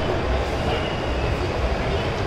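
Steady ambience of a busy shopping-mall atrium: a dense wash of crowd murmur over a low, unsteady rumble.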